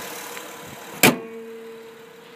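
The hood of a 2012 Honda Ridgeline being slammed shut: one sharp slam about a second in, with a short metallic ring after it.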